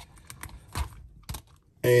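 Light plastic clicks and rattles as hands pick through a clear plastic accessory tray of swap-out figure hands: a few small taps over the first second and another a little later, then a voice near the end.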